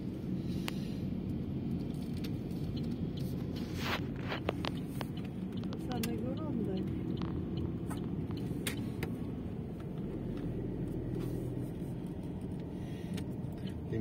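Steady low rumble of a car driving, heard from inside the cabin: engine and tyre noise on the road, with a few light clicks and knocks about four to five seconds in.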